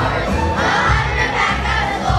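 Many children's voices shouting or cheering together over recorded backing music with a steady bass beat.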